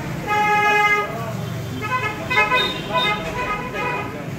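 A horn sounding: one held note for most of a second, then a run of shorter notes at changing pitches.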